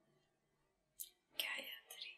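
A quiet pause of about a second, then a short sharp click and a soft whispered voice.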